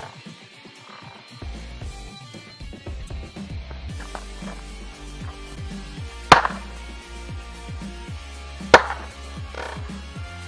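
Background music with a steady beat, over which come two sharp, loud hammer blows on a flat-panel computer screen, about two and a half seconds apart in the second half.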